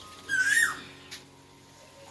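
A bird's short whistled call, rising then falling, heard once about half a second in, over a faint steady hum.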